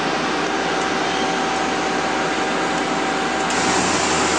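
Mazak Quick Turn Nexus 200 II CNC lathe running: a steady machine hum with two steady tones over a hiss, turning a little brighter near the end.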